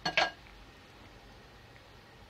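Two quick clinks of a bowl on hard kitchen surfaces right at the start, then only a low, steady background hum.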